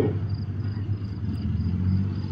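Distant tank engines running in a steady low rumble, with crickets chirping faintly.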